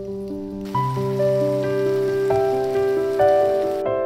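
Soft piano music over the sizzle of beef-topped zucchini and red pepper rounds frying in a pan. The sizzle comes in under a second in and stops abruptly just before the end.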